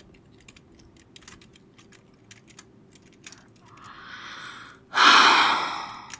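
Faint, scattered computer-keyboard clicks, then a woman draws a breath and, about five seconds in, lets out a loud, breathy sigh that fades away.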